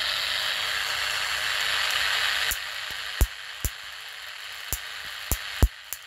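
High-voltage arcing driven by a Rayview high-frequency stimulator: a steady, dense spark hiss for about two and a half seconds that cuts off suddenly, then single sharp spark snaps at irregular intervals, the arc jumping over in the gas discharge safety tube.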